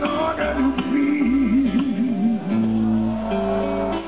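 Live band music: guitar strumming over a plucked double bass line. For the first two seconds a long held note wavers with a wide vibrato, and steady held notes follow.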